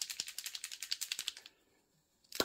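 A small plastic pot of Citadel Typhus Corrosion technical paint being shaken hard, giving a fast, even run of rattling clicks that stops about a second and a half in.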